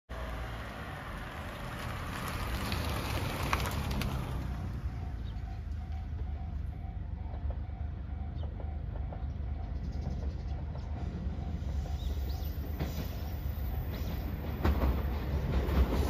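A level-crossing alarm rings in an even repeating pattern over a low rumble. Near the end a JR Shikoku 2700 series diesel train grows louder as it approaches.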